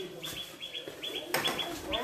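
A small bird chirping over and over in short, high chirps, often in pairs, with a single sharp knock about two-thirds of the way through.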